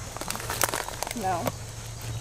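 Scattered light clicks and rustling as hands turn the white dials of a wooden puzzle-box geocache, with a short spoken 'No' midway.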